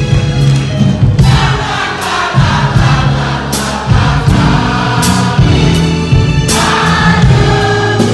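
Live soul band and vocal group performing: voices singing in harmony over a bass line and drum beat, loud throughout.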